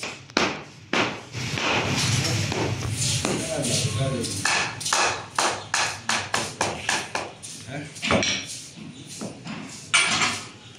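Talking in the first half, then a run of sharp knocks on wood, about two to three a second, typical of a hammer or mallet driving boards together.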